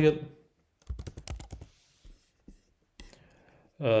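Typing on a computer keyboard: a quick run of keystrokes about a second in, then a few single clicks.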